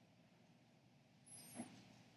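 Near silence: room tone in a pause between sentences, with one faint, brief high-pitched sound a little over a second in.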